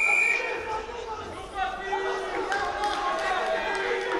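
A referee's whistle blast stopping the bout ends just after the start. Then come shouting voices of coaches and crowd in a large hall.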